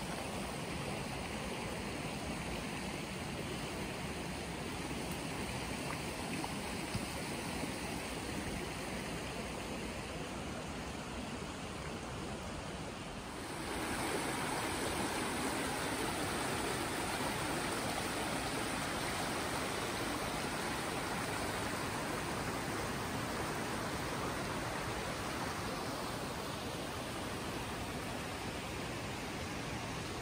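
Steady rush of a shallow rocky creek running over stones; it grows louder and brighter about halfway through.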